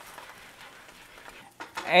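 A slice of bologna frying in a skillet on high-medium heat: a faint, steady sizzle, until a man starts speaking near the end.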